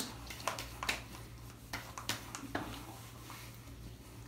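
Hands patting and slapping alcohol-based aftershave onto the face and neck: about five light slaps spread over the first few seconds.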